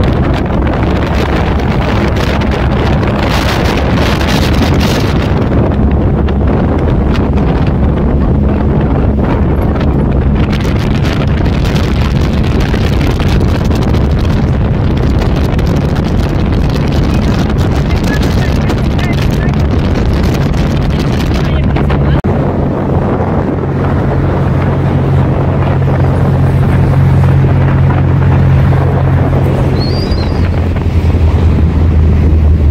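Wind buffeting the microphone with the steady drone of a vehicle's engine and road noise while riding in the open on a moving vehicle at highway speed. The low engine note shifts about two-thirds of the way through.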